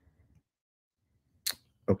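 Near silence, broken by one short, sharp sound about one and a half seconds in, just before a man's voice begins.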